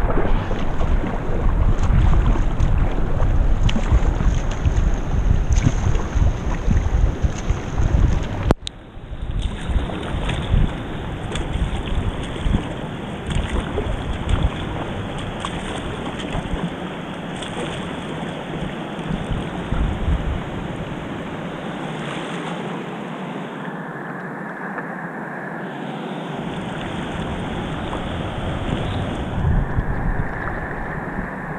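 Wind rumbling on the microphone, ending abruptly about a third of the way in, then a steady hiss of flowing river water with light splashes of a kayak paddle.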